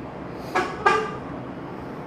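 A man's voice making two short voiced sounds, like a brief mumbled word or hesitation, about half a second in and again just before one second, over a steady hiss of the recording.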